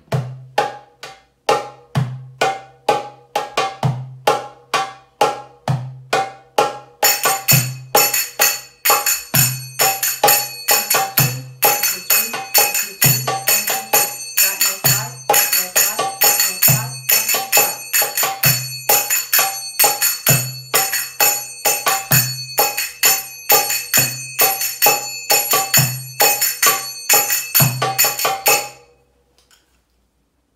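Darbuka (goblet drum) playing a walking maqsoum rhythm in 4/4, with a deep dum stroke about every two seconds and sharp tek strokes between. About seven seconds in, finger cymbals (zills) join with a ringing triplet pattern over the drum. Both stop together about a second before the end.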